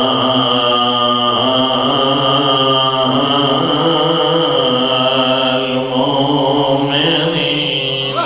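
A man's voice chanting a melodic religious recitation through a microphone and loudspeakers, drawing each note out for a second or more before moving to the next pitch. A steady high-pitched tone runs underneath.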